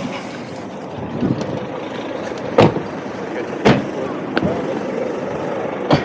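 City street and traffic noise with indistinct voices in the background, broken by a few sharp knocks; the two loudest come about two and a half and three and a half seconds in.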